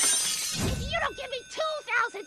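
Cartoon crash sound effect: a sudden burst of shattering glass, fading over about half a second, followed by a high-pitched cartoon character voice.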